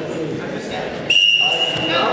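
A whistle blown once in a gym hall, one steady high blast of nearly a second that starts suddenly about halfway through, over a low murmur of voices.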